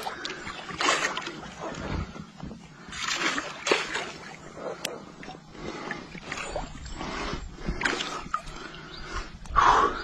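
Water splashing in irregular bursts as a large hooked fish thrashes at the surface.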